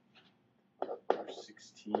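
A brief pause, then soft, half-whispered speech.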